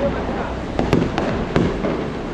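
Several sharp pops at irregular intervals over a busy background of noise and voices.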